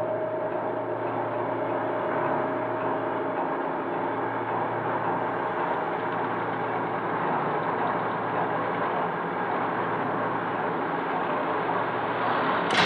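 Heavy barred steel gate sliding shut, a steady grinding rumble, while the ringing of a gong fades out in the first few seconds.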